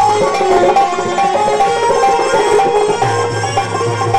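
Instrumental passage of Sindhi folk music, with no singing: a melody moves in short steps over dholak drumming. The dholak's deep bass strokes drop away early on and come back about three seconds in.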